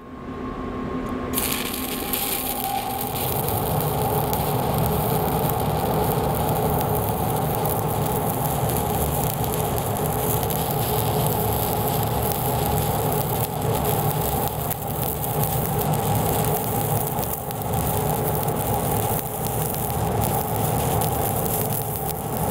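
Stick welding (shielded metal arc) with a 3/32-inch 7018 electrode on steel pipe: the arc builds up over the first couple of seconds after striking, then crackles and sizzles steadily and evenly as a fill pass is run uphill.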